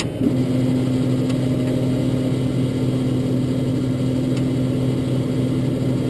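Truck engine running at a steady idle under a Pipehunter jetter's control panel. Its hum steps up slightly about a third of a second in, as a switch on the panel is pressed, then holds level: the throttle switch is not raising engine speed, a sign of the faulty cruise-control throttle circuit.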